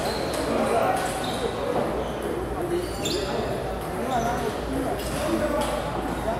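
Celluloid-style plastic table tennis balls clicking off tables and paddles in rallies around a large, echoing hall, scattered sharp ticks over a steady murmur of distant voices.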